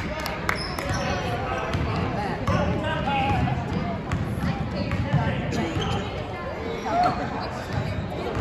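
Basketball being dribbled on a hardwood gym floor, with spectators' and players' voices throughout.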